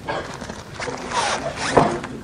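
A zipper being pulled in a rasping run that builds about a second in and peaks just before the end.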